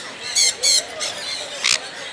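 Caged parrots squawking: two harsh squawks about a third of a second apart, then a single shriller screech near the end.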